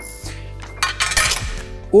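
A short clinking clatter about a second in, over steady background music: the extractor hood's removed decorative side panels being set down on the counter.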